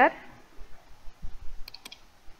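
Two or three quick computer mouse clicks close together near the end, over faint room tone.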